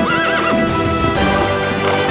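A horse whinnies once, a short wavering call in the first half-second, over loud film background music.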